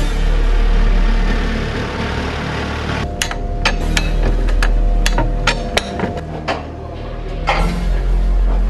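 Irregular sharp metal clanks, about ten over three seconds starting about three seconds in, with ringing after each: steel tools striking the steel skid track and blocks. Background music plays throughout.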